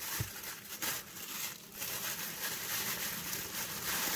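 Thin plastic packaging bags crinkling and rustling irregularly as they are handled and opened.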